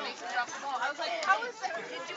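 Indistinct talk of several spectators' voices, overlapping chatter with no clear words.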